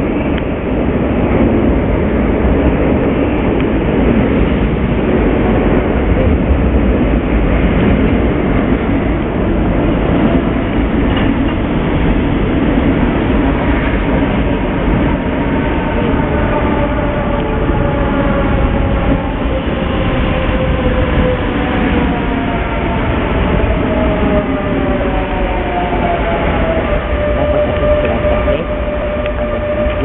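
Renfe Class 447 electric multiple unit running into an underground station, with a heavy rumble as it passes. In the second half its motors whine in several tones that fall in pitch as the train slows, settling into one steady tone near the end.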